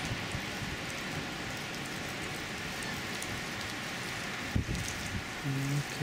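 Steady outdoor background hiss picked up by the camcorder's microphone, with one short thump about four and a half seconds in; a man's voice starts near the end.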